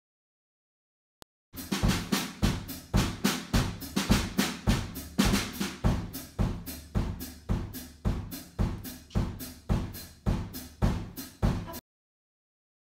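A Gretsch drum kit played in a steady beat, kick and snare hits about twice a second with cymbals. It starts about a second and a half in and cuts off abruptly just before the end.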